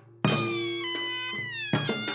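Korean traditional drum-dance music: after a brief gap a hard stroke brings in the band, the taepyeongso shawm's nasal note sliding down in pitch over about a second and a half above a steady low ringing tone, with sharp drum strokes near the end.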